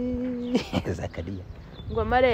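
A person's drawn-out hum at one steady pitch, held for about half a second at the start, then quieter low rumbling.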